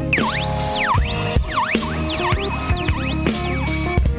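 A hip hop beat playing back from two teenage engineering PO-33 Pocket Operator samplers running a chained pattern arrangement: chopped sample loops over sampled drums and bass. In this stretch a sampled tone repeatedly slides down and back up over the beat.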